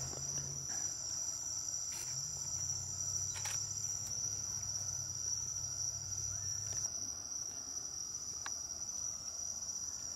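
Insects singing in a steady, continuous high-pitched chorus.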